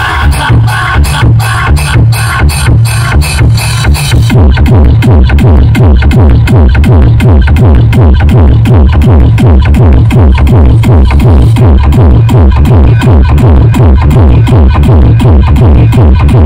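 Electronic dance music with a heavy bass beat played at very high volume through a large outdoor DJ speaker stack. About four seconds in the track changes: the treble drops away and the bass pulses come faster and louder.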